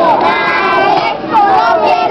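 Several children and women singing together in a loose chorus, the kind of group song sung while a child takes swings at a piñata.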